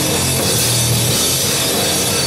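A rock band playing live and loud: bass guitar and drum kit, with cymbals filling the top, running steadily without a break.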